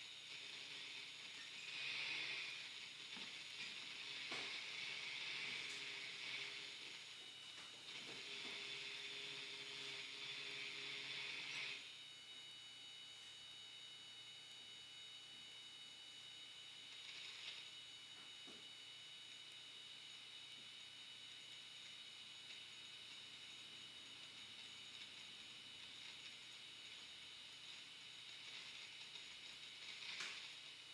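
Live electronic performance sound: grainy crackling noise laced with thin, steady high tones. The dense crackle stops abruptly about twelve seconds in, leaving the high tones over a fainter texture.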